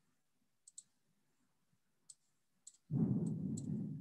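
About six faint, scattered clicks at a computer, typical of clicking with a mouse or keys. Near the end comes a louder low, muffled rumbling noise.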